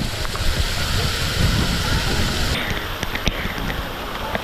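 Waterfall spray falling close by in a steady rush of water. About two and a half seconds in the rush turns duller, with scattered small sharp ticks of drops.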